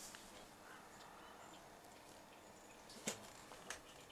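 Near silence: faint outdoor room tone, broken by a brief sharp click about three seconds in and a softer one just after.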